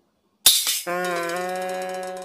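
An edited-in comedy music sting: a sharp rattling hit about half a second in, then a held, steady chord.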